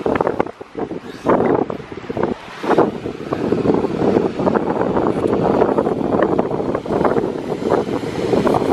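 Strong wind buffeting the camera's microphone in uneven gusts, a rough low rumble that dips briefly in the first couple of seconds and then holds up.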